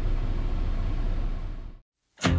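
Steady diesel engine drone and road noise heard inside a semi-truck cab while driving, fading out to silence near the end.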